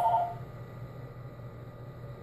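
An electronic two-tone telephone ring that cuts off about half a second in, followed by a low, steady hum.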